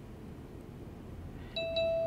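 UniFi Protect G4 Doorbell's speaker sounding an electronic chime about one and a half seconds in, as the doorbell begins connecting to Wi-Fi during setup: one held mid-pitched tone with brighter, higher tones over it.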